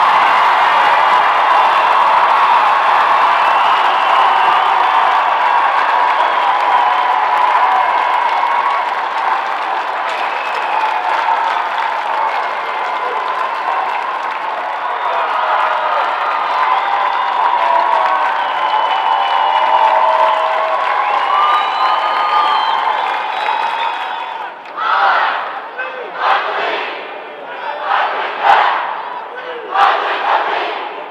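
Arena crowd cheering and shouting for a state championship win, loud and steady, slowly easing off. In the last few seconds it breaks into a run of separate loud group shouts about a second apart.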